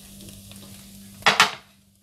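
Beef mince frying in a steel pot with a faint sizzle over a low steady hum; the water has cooked off and the mince is browned. About a second and a quarter in comes a brief voice sound, after which the sound drops away to near silence.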